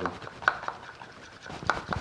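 Metal spoon stirring oil, vinegar and salt in a small glass bowl to emulsify a vinaigrette, with light rubbing and a few sharp clicks of the spoon against the glass.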